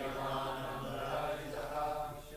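A group of voices chanting a line of a Sanskrit verse together in unison, the blended pitch of many singers slightly smeared.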